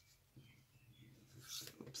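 Near silence with faint rustling of hands handling cardstock and thin metal cutting dies on a craft mat, a little louder about one and a half seconds in.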